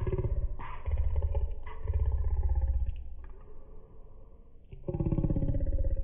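A man's low, muffled voice talking in stretches, with a quieter pause about three seconds in and talking again near the end.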